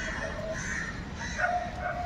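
A small dog yipping and whining in several short calls.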